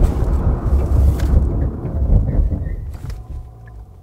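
Low road and tyre rumble inside the cabin of a 2022 Genesis G80 Sport braking hard from about 100 km/h. It dies away over the last second as the car comes to a stop.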